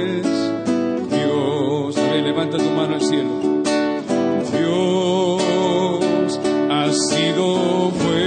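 Worship music: acoustic guitar strumming under a held, wavering melody line.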